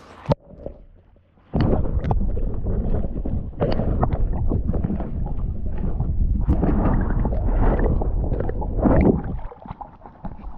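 Muffled rushing and gurgling of water around a camera held just under the sea surface, a dense low rumble with many small knocks. It starts about a second and a half in and stops shortly before the camera comes back out of the water.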